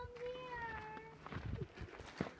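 A young goat bleating: one long, high call lasting just over a second that sinks slightly in pitch.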